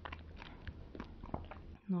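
Close-miked mouth sounds of eating Greek yogurt off a plastic spoon: a string of short wet clicks and lip smacks, over a low steady hum.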